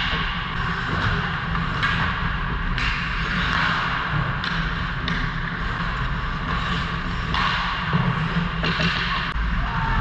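Ice hockey play: skate blades scraping the ice in short bursts and sticks and puck knocking, over a steady low hum from the rink.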